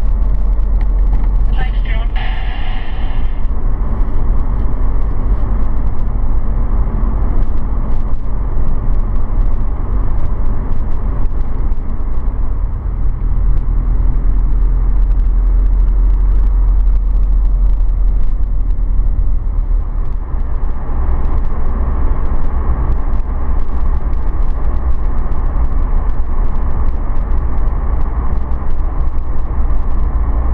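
Steady low road and engine rumble of a car driving at highway speed. A short higher-pitched sound cuts in about two seconds in.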